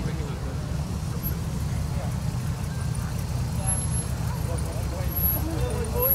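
Low, steady engine sound from classic cars moving slowly past, with people talking in the background.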